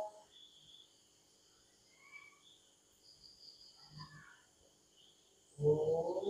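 Faint, steady high-pitched chirping of insects in a lull. Near the end a voice starts a devotional chant.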